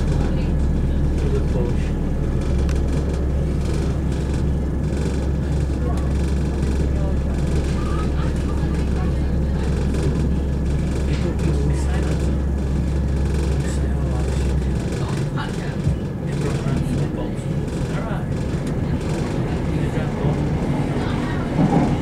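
Running noise inside a Southern class 171 diesel multiple unit on the move: a steady low drone from the underfloor diesel engine under rumbling wheel and track noise. About fifteen seconds in, the low drone stops abruptly while the running noise carries on.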